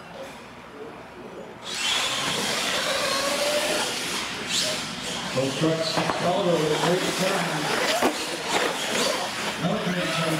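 Radio-controlled monster trucks' electric motors whining as they launch and race down the track, coming in suddenly about two seconds in, with a few sharp knocks as the trucks hit the ramps. Voices shout over it in the second half.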